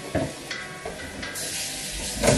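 Tap water starts running into a stainless steel pot in the kitchen sink about a second and a half in, as an even hiss. Before that come a couple of light knocks as the pot is handled.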